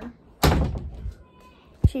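A door slammed shut about half a second in, its bang ringing briefly, then a short low thump near the end.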